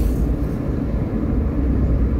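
Steady low rumble of a car's engine and road noise heard from inside the moving car's cabin.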